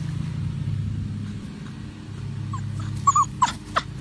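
Young puppy giving a run of short, high-pitched whimpering yips in the second half, about four in quick succession, over a steady low hum.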